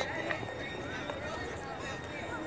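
Faint, indistinct chatter of several people talking at a distance, with a faint steady high tone underneath.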